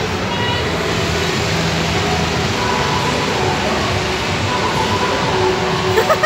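Steady din of a large indoor hall: a constant rushing noise with faint, distant voices in it.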